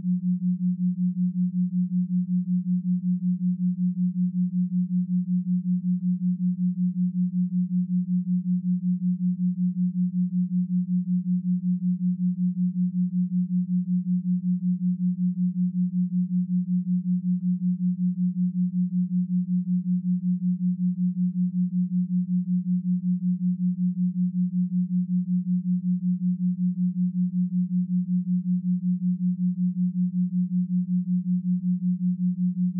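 Binaural-beat tone: a steady, pure low hum of about 200 Hz with a regular pulse several times a second, which is the beating of two slightly detuned sine tones.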